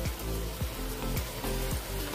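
Batter-coated cauliflower pakoras sizzling as they deep-fry in hot oil in a kadhai, a steady crackling hiss. Background music with a steady beat of about two beats a second plays along.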